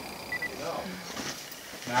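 Two quick, high electronic beeps from a handheld digital camera being aimed for a photo. This is the kind of double beep a camera gives when its autofocus locks. Faint voices are heard behind it.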